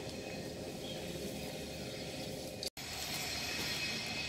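Faint, steady background noise with a low hum and no distinct event, dropping out completely for an instant about two and a half seconds in.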